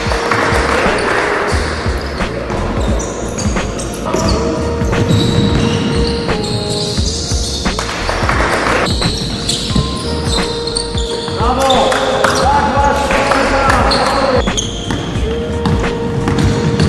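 Basketball game sounds in a sports hall: a ball bouncing on the court and players calling out, with a shout about eleven seconds in. Background music with long held notes plays over it.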